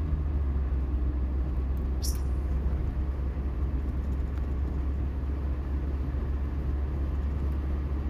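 Steady low rumble of a car driving at road speed, heard from inside the cabin, with a faint click about two seconds in.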